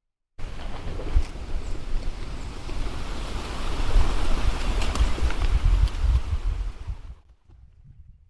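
Wind rumbling on the microphone over the rush of a large flock of birds taking off together from the trees. It starts suddenly and is loudest about four to six seconds in, then dies away near the end.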